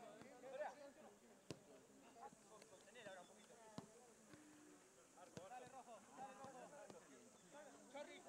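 Faint, distant voices of players calling out across a football pitch, with a few sharp knocks of a football being kicked.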